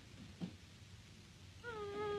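A cat meowing: one long meow begins near the end and holds a steady pitch, after a faint knock about half a second in.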